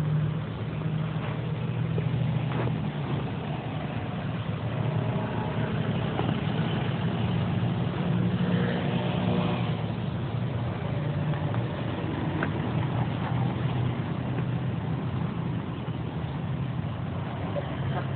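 A steady low engine hum, like vehicles running, with faint voices in the background around the middle.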